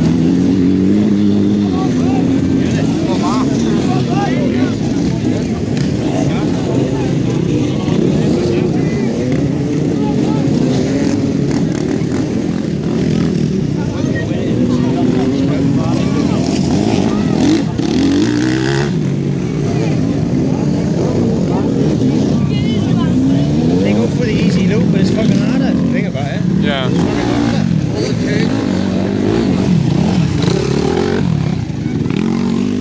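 Enduro dirt bike engines revving up and down over and over as riders work through a muddy section, the pitch repeatedly rising and falling. One bike comes close near the end.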